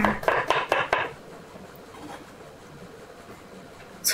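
Santoku knife slicing garlic cloves on a bamboo cutting board: several quick knocks of the blade on the board in the first second. After that, only faint room tone.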